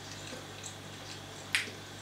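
Quiet mouth sounds of someone chewing a bite of soft cheesecake, with a few faint clicks and one sharp lip smack about one and a half seconds in, over a low steady hum.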